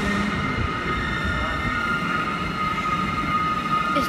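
NS DD-AR double-deck train moving along a station platform: a low running rumble of wheels on rail with a steady high whine over it.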